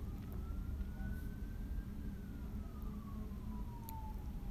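A distant siren wailing: one faint tone that rises slowly, then falls and starts to rise again, over a low steady rumble.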